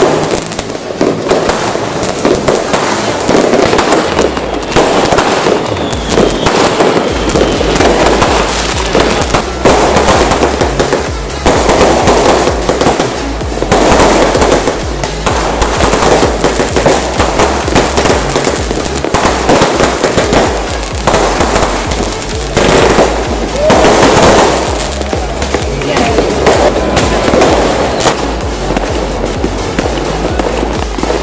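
Aerial fireworks bursting overhead in a dense, continuous run of bangs and crackles, with hardly a pause.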